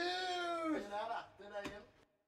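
A long meow-like call that rises and falls in pitch, followed by two shorter calls, with a sharp click near the end before the sound cuts off.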